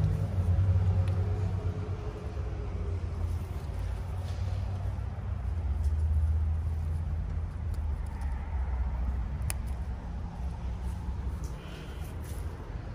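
A steady low rumble, with a single faint click late on.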